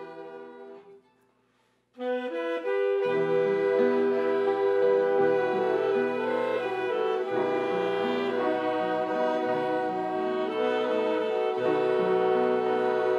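Instrumental ensemble of saxophones, violins, flute, piano, guitar and keyboards playing a slow piece. The music dies away into a short break, then the full ensemble comes back in about two seconds in, with the saxophones prominent.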